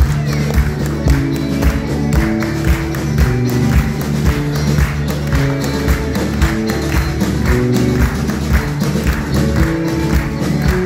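Live band playing a song with a steady drum beat and acoustic guitar.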